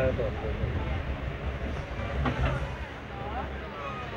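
Indian Railways passenger train rolling slowly alongside a platform as it arrives at a station: a steady low rumble from the coaches, with voices heard over it.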